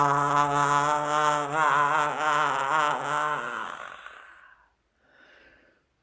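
A man's long, sustained open-mouthed 'aaah', voiced with the mouth stretched as wide as it will go. It holds a steady pitch, wavers a little in the middle, and fades out about four seconds in, followed by a faint breath.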